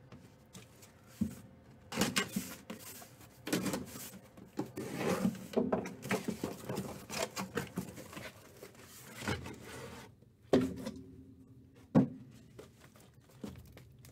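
A cardboard shipping case being cut open with a utility knife, with scraping and rustling of cardboard as the flaps are pulled back and the sealed boxes are worked out. Near the end come three sharp knocks as the boxes are set down in a stack.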